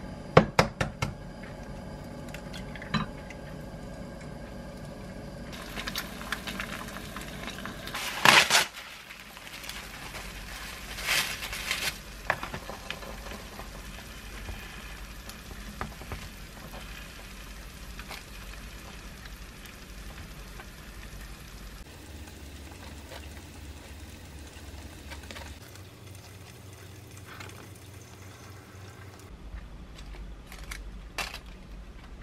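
Home cooking sounds: sharp clicks and knocks of utensils against a frying pan on a gas stove, with light frying noise, then softer handling of food on plastic wrap over a cutting board. The loudest knocks come in a cluster about eight seconds in and again around eleven to twelve seconds.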